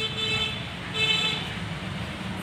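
A vehicle horn sounds twice in short toots, the first at the start and the second about a second in, over a steady low traffic rumble.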